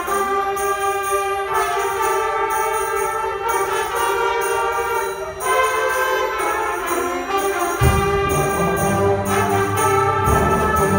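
Student concert band of woodwinds and brass playing sustained chords over a steady beat on high percussion. Strong low bass notes come in about eight seconds in.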